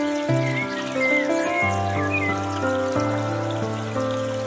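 Slow piano music of sustained, overlapping notes over a low bass line, with the trickle of a bamboo water fountain behind it.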